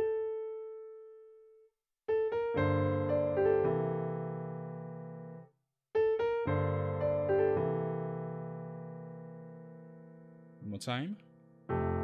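Piano: a held note rings out and dies away, then the same short melody phrase of quick notes leading into a full chord with a bass note is played twice, each chord left to ring and fade. Near the end there is a brief voice sound, and a new chord is struck.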